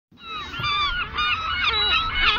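A flock of gulls calling: many short, overlapping cries that bend in pitch, several a second.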